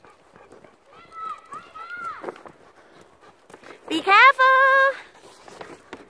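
High-pitched wordless calls: a faint one about a second in and a loud, held one about four seconds in, over faint footsteps on a gravel path.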